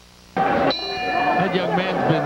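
Boxing ring bell struck once, a little under a second in, ringing with a steady metallic tone and fading over about a second: the bell ending the round.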